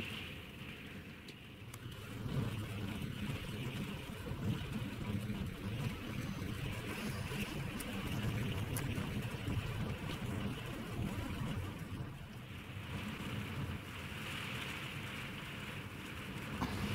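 Strong wind gusting over an open beach and buffeting the microphone: an uneven rumble that rises and falls with the gusts, over a steady hiss.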